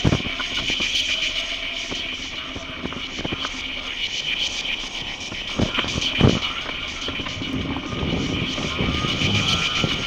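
Mobility scooter running along a paved footway, its electric drive giving a steady high whine, with sharp knocks and jolts over the paving about five and six seconds in. A car engine comes up close near the end.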